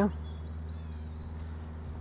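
Faint high bird calls, a few thin, slightly falling chirps in the first second and a half, over a steady low background hum.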